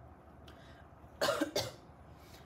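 A woman coughing twice in quick succession, a little past a second in.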